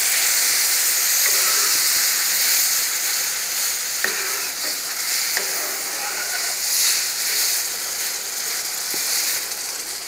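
Water poured into a hot browned flour-and-shortening roux in a cast-iron skillet, sizzling and hissing steadily. A few short clicks come from the metal spoon stirring against the skillet.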